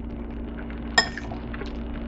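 A metal fork clinks once against a ceramic bowl about a second in: a single sharp, ringing chink.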